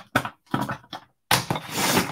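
Paper and craft pieces handled on a cutting mat: a few short rustles and taps, then a longer sliding paper rustle near the end.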